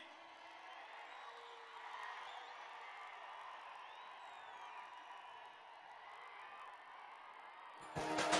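Faint, distant crowd noise from a large open-air rally audience, with scattered shouts and whoops.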